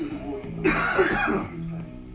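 Background guitar music from a cartoon soundtrack, with a short non-word vocal noise from a boy lasting about a second, just after the start; this noise is the loudest thing.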